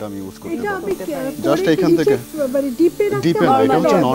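Speech: a person talking continuously, with no other sound standing out.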